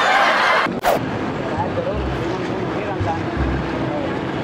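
A moment of background music that cuts off sharply under a second in, followed by busy street ambience: traffic noise and faint voices of passers-by.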